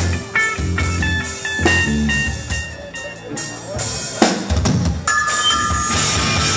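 Live rock band playing electric guitars and drum kit in stop-start chords and hits, with a sharp drum hit about four seconds in and the full band playing continuously from about five seconds.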